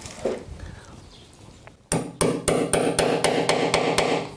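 A hammer tapping on a piano tuning pin in a grand piano being restrung. There are about ten quick strikes, about five a second, starting about halfway through. Each strike sets the piano's frame and strings ringing.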